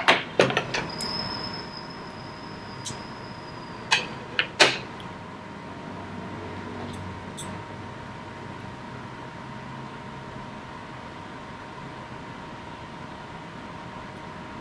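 A few sharp clicks and small taps from a craft knife and a micro USB plug being handled while excess aluminium foil tape is trimmed, loudest about four and a half seconds in, over a quiet steady hum.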